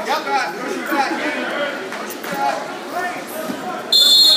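Overlapping voices of spectators talking and calling out in a gymnasium during a wrestling bout, with no single clear speaker.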